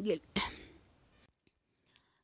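The tail of a spoken word, then a short sharp mouth noise from the speaker. After that it is near silence.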